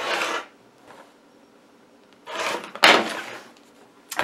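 A quilting ruler handled on a cutting mat and a rotary cutter run along it through the fabric: two short scraping rushes, the first right at the start and the second about two and a half seconds in, with a sharp click in the second.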